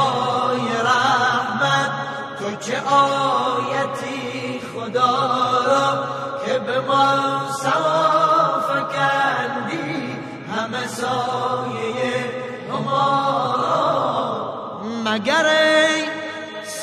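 A voice chanting a devotional Persian song in long, wavering melodic lines, without pause.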